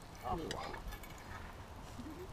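Faint voices with a short "oh" near the start, over a low rumble and the light crackling of a wood campfire.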